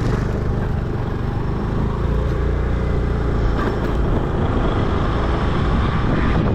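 A motorbike or scooter being ridden along a road: its small engine runs steadily under a heavy, low rumble of wind on the microphone.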